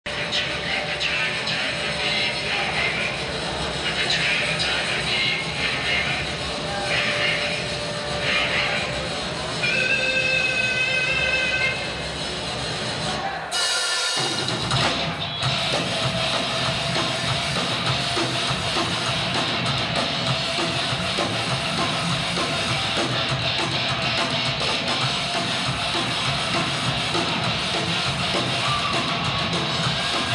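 Live rock band on a concert recording: voices and a held guitar tone at first, a sudden break in the sound about halfway through, then the full band playing with drums and electric guitar.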